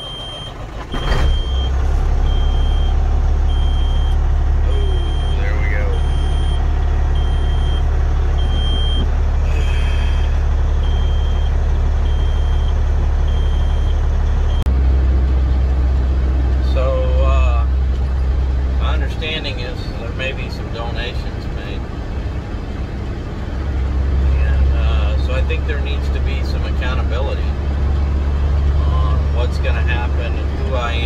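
Semi truck's diesel engine starting about a second in and then running with a steady low rumble, while a dashboard warning buzzer beeps about once a second: the low-pressure warning that sounds until pressure builds after start-up.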